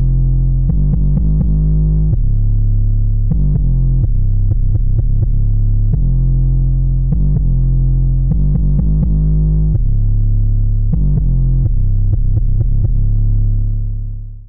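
Solo trap 808 bass line from FL Studio playing a melodic pattern: deep, loud sustained bass notes that jump between pitches, some held a second or two and others in quick runs.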